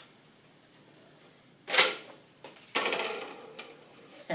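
Rubber band releasing a cup flyer with a sharp snap a little under halfway through. About a second later comes a rougher stretch of sound as the taped-together cups hit the floor and tumble.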